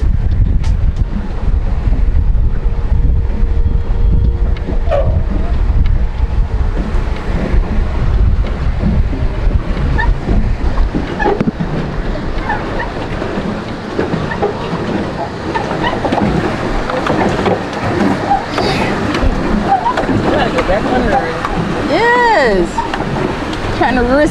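Wind rumbling on the microphone over water lapping and churning around a pedal boat as it is pedalled across a lake. The wind eases about halfway through, and indistinct voices rise near the end.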